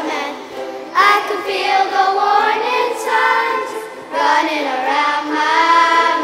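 Children's choir singing in unison to strummed ukulele accompaniment, with new sung phrases coming in about one second and four seconds in.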